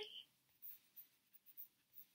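Near silence, with a few faint, brief brushing sounds of a hand moving over tarot cards on a table; a voice trails off at the very start.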